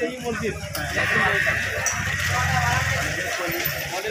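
Several people's voices talking outdoors, with a louder steady hiss and hum mixed in from about one to three seconds in.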